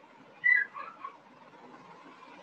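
A brief, loud high-pitched whistle-like sound about half a second in, dipping slightly in pitch, followed by two fainter, lower pitched blips, over a faint background hiss.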